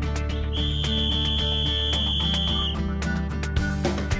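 A coach's whistle blows one long, steady, high blast of about two seconds, starting about half a second in, over background music with a steady beat.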